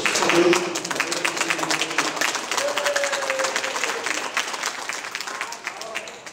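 An audience clapping in a large room, a dense patter that thins out and dies away about five and a half seconds in, with a few voices over it.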